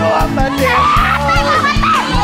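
Karaoke backing music with a steady low beat, under several excited, high-pitched voices calling out over one another.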